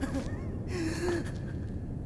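A character's breathy, wordless vocal sound over a low steady rumble, held for about half a second near the middle.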